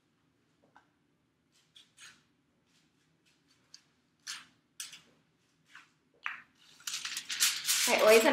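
Short crinkling and scraping sounds from aluminium highlighting foil being handled and a tint brush worked over it, about a dozen separate strokes, merging into a continuous rustle in the last second.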